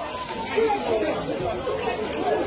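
Indistinct voices of several people talking over one another, with no clear words.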